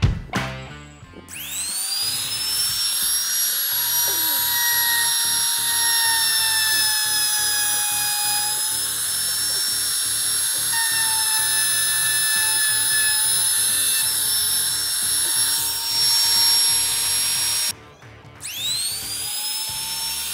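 Dongcheng DMP02-6 wood trimmer (small router) spinning up with a rising whine about a second in, then running at high speed with a steady high-pitched whine as it trims the edge of a laminate-faced board, the pitch sagging slightly now and then under load. It stops abruptly near the end, then starts spinning up again.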